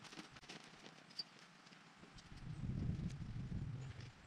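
Scattered light clicks and rustles as a dome tent is put up, its poles and fabric being handled. A louder low rumble comes in about two seconds in and lasts about a second and a half.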